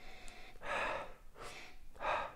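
A man breathing in audibly through his nose with a whisky glass held to it, nosing the whisky. One long breath comes about half a second in, and another starts at the end.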